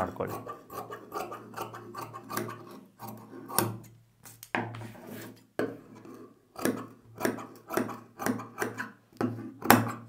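Tailor's shears cutting through cotton blouse fabric on a table: a run of short crisp snips, roughly one every half second to a second, as the blades close along the marked line, over a low steady hum.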